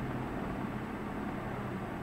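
Steady low hum with a faint hiss of background room noise.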